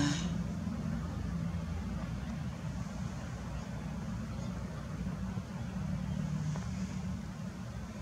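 A low, steady engine-like rumble with a faint hum, swelling slightly a couple of times, like a motor vehicle running at a distance.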